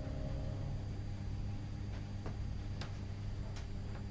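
Cabin noise of a Class 317 electric multiple unit train on the move: a steady low rumble, with a few sharp clicks in the second half.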